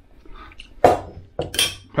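A metal fork clinking and scraping against a small stainless steel bowl of mashed avocado: a sharp clink a little under a second in, then a longer clattering scrape about half a second later.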